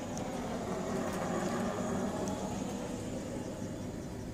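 Low, steady rumble of a vehicle going by, swelling slightly about two seconds in and easing off.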